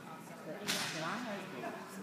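Background voices talking, with a single sharp crack-like sound about two-thirds of a second in.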